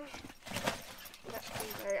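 Handling of a large nylon kit bag: fabric rustling with light knocks and clatter as the bag is held open and items are moved inside.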